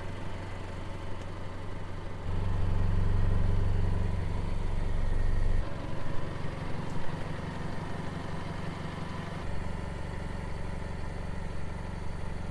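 Car engine idling with a steady low hum, louder for a few seconds from about two seconds in and again near the end.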